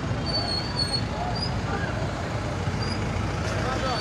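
Busy street traffic running at idle and low speed, with a crowd of people talking over one another indistinctly.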